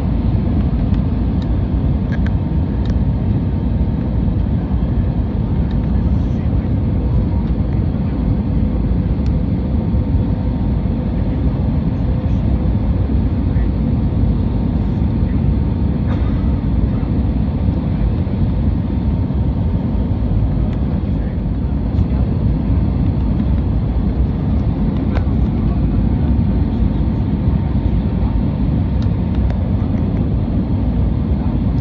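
Airbus A320neo cabin noise during the descent to land: a steady, loud roar of engines and airflow with a faint steady hum running through it.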